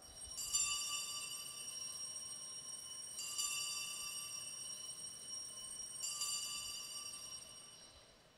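Altar bell struck three times, about three seconds apart, each stroke ringing on with high, steady tones. This is the consecration bell marking the elevation of the chalice.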